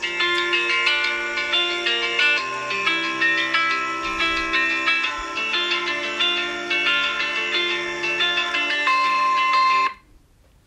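Music played at maximum volume through an iPhone XR's built-in loudspeakers, peaking at about 90 dB on a sound meter; it cuts off suddenly near the end when playback is stopped.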